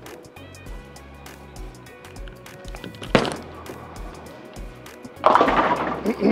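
Background music with a steady beat. About three seconds in, a urethane bowling ball lands on the lane with a sharp thud, and near the end it hits the pins, which crash and scatter loudly.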